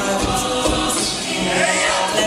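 Collegiate a cappella group singing a pop arrangement live in close harmony: many voices holding layered chords over a low, regular beat.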